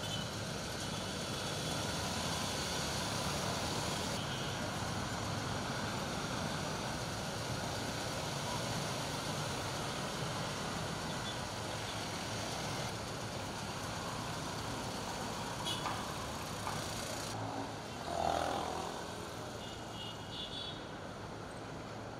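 Steady road traffic, mostly motorcycles and cars going by, with one louder vehicle passing late on.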